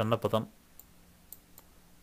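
A man's word trails off at the start, then three faint computer mouse clicks come in a low-level quiet.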